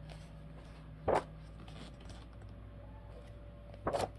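Pages of a paperback coloring book, water-damaged, being turned by hand: a short paper rustle about a second in and another near the end, over a faint steady room hum.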